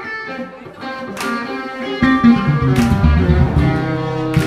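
Live jazz band with an electric guitar playing a solo; sharp strokes cut in about a second in and again near three seconds. About two seconds in, a heavy low bass part enters and the music gets louder.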